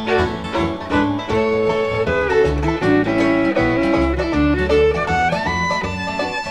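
Bluegrass band playing an instrumental break, with a fiddle carrying the melody over guitar and bass.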